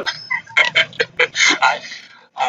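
Laughter in short repeated bursts, tailing off near the end.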